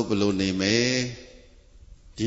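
A man's voice over a microphone holding one drawn-out, chant-like syllable for about a second, then a pause.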